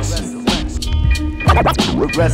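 Boom-bap hip-hop beat with kick drum and hi-hats, with turntable scratches of a vocal sample swooping over it about halfway through and again near the end.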